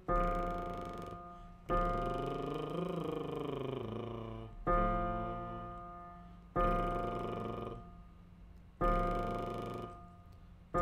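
Piano accompaniment for a vocal warm-up: five chords struck one after another, each left to ring and die away. Between about two and four seconds in, a voice glides up and back down over the sustained chord, singing the exercise pattern.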